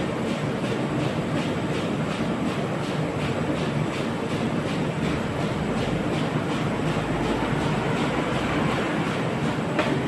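CHM-1400 paper roll sheeter running, cutting four webs of 65 GSM offset paper into sheets: a loud steady mechanical noise with a regular beat of about three strokes a second.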